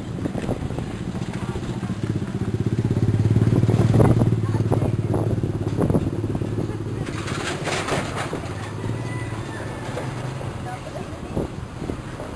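A motorcycle engine running as it passes, its low hum growing louder to a peak about four seconds in and then slowly fading.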